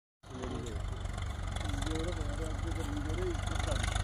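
Swaraj 744 XT tractor's three-cylinder diesel engine running steadily, pulling a loaded trolley, with a low, even pulse. A man's voice is heard over it.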